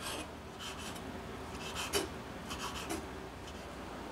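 Chef's knife chopping figs on a wooden cutting board, in short runs of quick strokes, the loudest about two seconds in.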